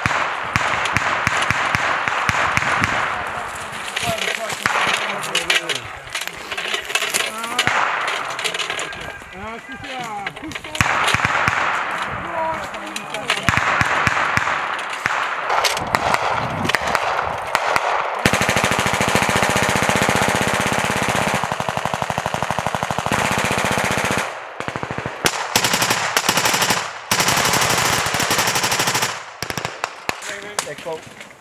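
Belt-fed machine-gun fire: scattered shots and short bursts at first, then long bursts of rapid automatic fire from a little past halfway, with a short break about six seconds before the end and a stop just before it.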